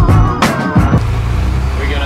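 Backing music with a singing voice and drum hits, which stops about a second in. Then the steady low drone of a converted school bus's engine running, heard from inside the cab.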